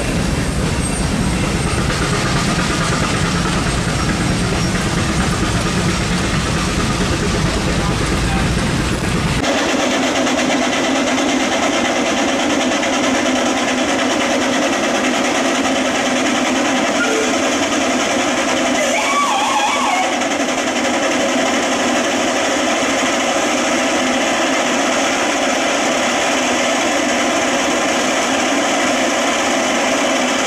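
Steam traction engines running at a show, with a steady mix of machinery noise and background crowd chatter; the sound changes abruptly about ten seconds in.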